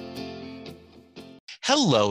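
Strummed guitar music fading out over the first second and a half, then a short gap before a man's voice begins speaking near the end.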